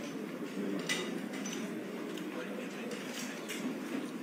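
Faint indistinct chatter of people in a large hall, with a few light clinks and knocks.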